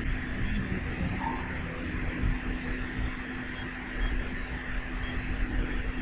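A steady low hum under an even, faint hiss, with no distinct knocks or clicks.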